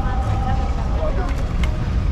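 Busy street ambience at a pedestrian crossing: crowd voices and passing traffic over a steady low rumble.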